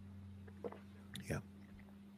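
A quiet pause between speakers: a low, steady electrical hum with two faint, brief voice sounds, about half a second and a second and a quarter in.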